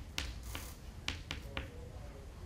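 Chalk writing on a blackboard: several sharp taps, with a short scratchy stroke about half a second in.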